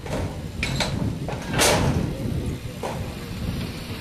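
Corrugated metal roofing sheets clattering and scraping as they are handled and pulled from a torn-down shack. There are four rough scrapes, the loudest about a second and a half in, over a low rumble.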